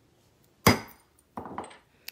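A hammer striking a steel letter stamp held on a metal disc on a steel bench block: one sharp, ringing metal-on-metal hit that drives a letter into the blank. A fainter noise follows about a second later.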